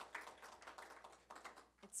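Faint, scattered audience clapping dying away, thinning out over the first second and a half, before a woman's voice starts right at the end.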